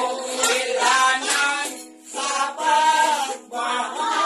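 A group of voices singing together, with a small guitar played along, in phrases with short breaks about halfway through and just before the end.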